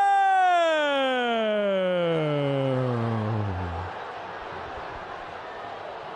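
A long, drawn-out vocal cry at a missed goal chance, sliding steadily down in pitch and dying away about four seconds in. After it comes a steady rush of stadium crowd noise.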